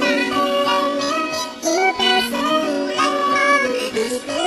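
A pop song sung in sped-up, high-pitched 'chipmunk' vocals over a backing track, the voice moving through a melody with short pitch bends.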